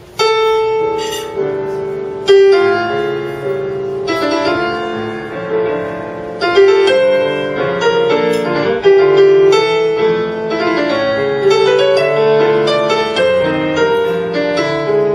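Grand piano played solo in a jazz style, a stronger melody line ringing out over softer chords beneath it.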